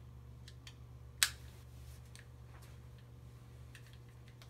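Respiratory belt clip clicking onto a NOX T3 sleep monitor: one sharp click about a second in, with a few fainter ticks from the belt and clip being handled, over a steady low hum.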